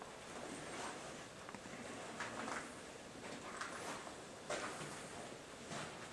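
Footsteps scuffing and crunching on a concrete floor strewn with grit and rubble, faint and uneven, roughly one step a second.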